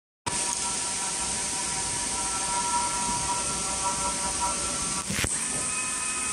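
Steady hiss with a faint hum of several steady tones, without any stitching rhythm, from an automatic pillow case sewing machine standing between cycles. A short rush of noise comes about five seconds in.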